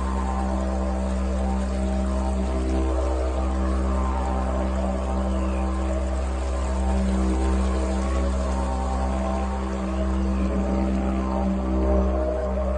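Ambient meditative music built on a steady, low didgeridoo drone, its overtones held in an even stack above it.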